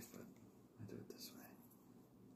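Faint whispering close to the microphone, in two short soft phrases.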